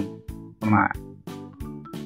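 A man's voice says a short word in Thai, over quiet background music with steady held tones.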